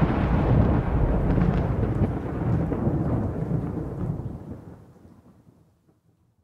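Rumbling thunder over rain, a storm recording at the close of a metal track, fading out to silence about five seconds in.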